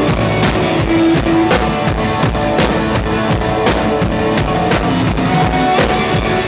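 Live rock band playing loud: a drum kit with bass drum and cymbal hits on a steady beat under held guitar notes.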